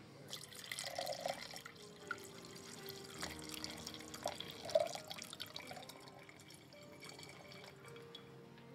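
Red wine being poured from a bottle into a wine glass: a steady trickling stream with a few short gurgles as the glass fills.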